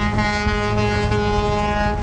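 Sydney harbour passenger ferry sounding its horn in one long, steady blast of about two seconds, a warning to the racing skiffs close across its path. Wind rumble runs underneath.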